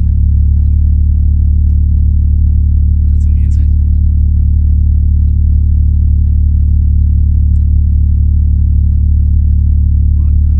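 Mazda RX-7 FD3S engine idling steadily, heard from inside the cabin as a constant low drone.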